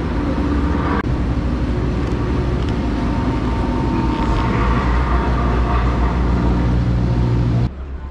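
A motor vehicle's engine running close by on the street: a steady low rumble that grows a little stronger in the second half, then cuts off suddenly near the end.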